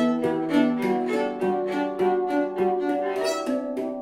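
Schlagwerk Equinox handpan, tuned to 432 Hz, struck by hand in a steady run of quick ringing notes, while a violin bows long sustained notes over it: a handpan and violin improvisation.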